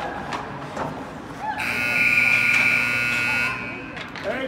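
Ice hockey rink's scoreboard buzzer sounding one steady blast of about two seconds, starting about a second and a half in, signalling the end of the first period. Voices and skate and stick clatter around it.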